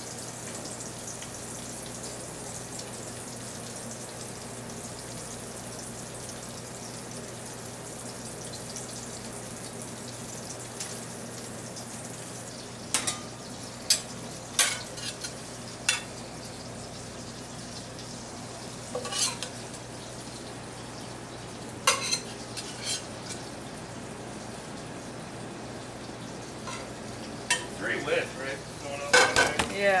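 Beef patties, onions and French toast frying in stainless steel pans on a gas range, a steady sizzle. From about halfway in, a metal utensil clinks and scrapes against a pan as the onions are stirred, with a quick run of clinks near the end.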